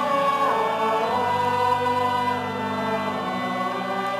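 A choir singing a sacred chant during Mass, in long held notes that change pitch every second or so.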